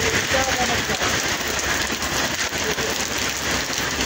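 Heavy rain falling on pavement and a wet road, a steady dense hiss.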